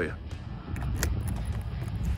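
Low rumbling wind and handling noise on a hand-held phone microphone as it is moved, with a few faint clicks.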